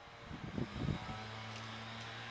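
A small mini bike's motor running as it is ridden. A few uneven surges in the first second settle into a steady hum.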